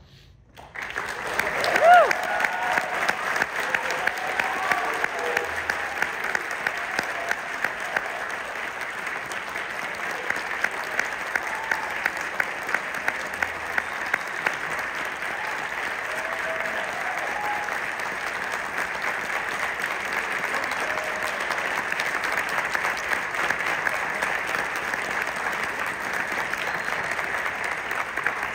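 Audience applauding and cheering, starting about a second in, with a loud whoop about two seconds in and sharp claps from one person close by standing out through the first half.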